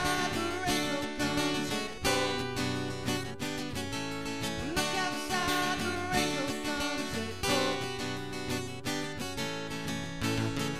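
Acoustic guitars strummed in a fast, steady rhythm, an instrumental passage of a punk-style acoustic cover song with no singing.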